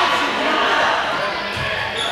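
Several players shouting and calling out, echoing in a large sports hall. The voices are loudest in the first second and then fade. A low thud comes about a second and a half in.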